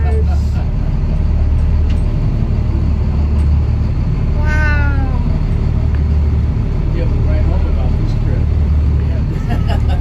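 Steady low hum of the tour boat's engine, with one drawn-out, falling vocal exclamation about halfway through.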